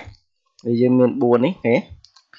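A man speaking in a short phrase after a brief pause.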